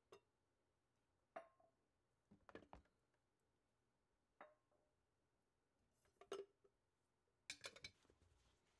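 Glass jars and a glass cloche clinking faintly now and then as they are handled over a plastic bin, about six light knocks spread out, one early on ringing briefly.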